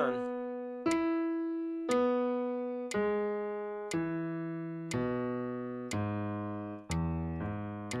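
Piano playing solid block chords, one struck about every second and left to ring and fade before the next, the bass notes moving lower in the second half.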